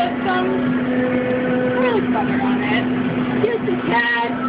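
Indistinct voices talking over a steady low machine hum.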